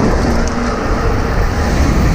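Strong wind buffeting the microphone of a road bike riding at speed, with steady rushing road noise from the tyres.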